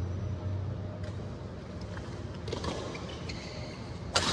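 Badminton rally in a large hall: a few faint racket strikes on the shuttlecock and brief shoe squeaks on the court floor, over a steady low hum.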